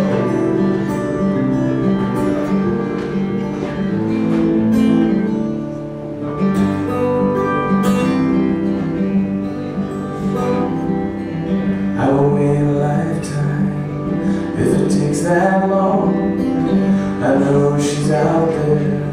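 Solo steel-string acoustic guitar playing a song's intro, picked and strummed chords. A man's voice joins in, singing into the microphone, from about two-thirds of the way in.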